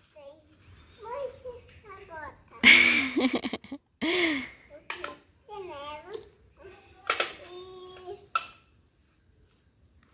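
A small child's voice talking and babbling in short phrases, broken by a few short noisy bursts.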